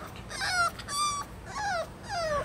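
A puppy whining in three or four short, high-pitched whimpers, most of them falling in pitch. It is hesitating at the edge of a deck step that it is too daunted to get down.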